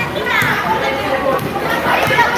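Indistinct chatter and calls from several players talking over one another, with one high call near the start.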